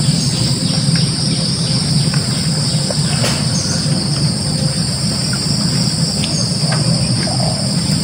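Steady outdoor chorus of insects, an unbroken high-pitched buzz, over a constant low hum.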